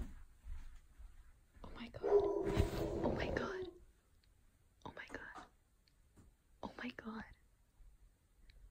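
Hushed whispering, with a louder drawn-out sound about two seconds in that lasts under two seconds.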